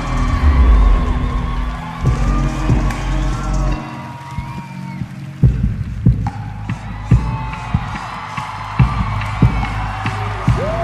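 Dance performance music with heavy bass that drops out about four seconds in, followed by a series of sharp percussive hits, with an audience cheering underneath.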